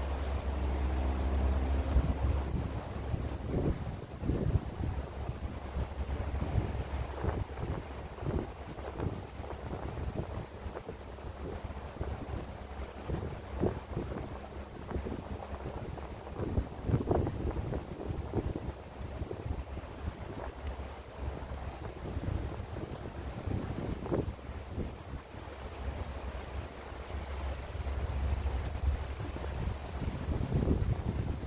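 Strong wind buffeting the microphone: a low rumble that swells in gusts at the start and again near the end, with irregular short thumps throughout.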